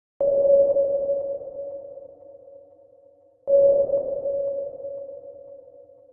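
Two synthesized ping tones, each starting suddenly on one steady mid pitch and fading out over about three seconds. The second comes about three seconds after the first.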